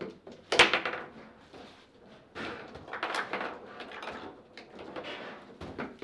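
Table football in play: a sharp, loud knock about half a second in, then stretches of clattering and clicking from the rods, plastic men and ball on the table.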